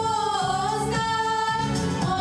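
Two women singing into microphones, holding long notes that slide from one pitch to the next.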